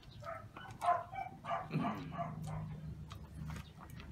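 A dog faintly making short calls, with a few light clicks.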